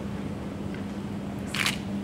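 A single short, crisp camera-shutter click about one and a half seconds in, over a steady low hum.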